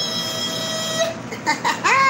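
A woman's voice holding a long, high, drawn-out greeting call on one steady pitch for about a second, then breaking into quick speech.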